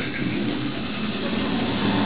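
Steady background noise with a faint low hum, with no distinct event.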